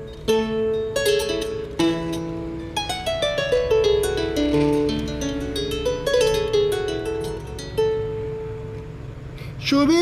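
Handmade double-necked kora being plucked solo: a melody of ringing notes, with a quick falling run of notes in the middle.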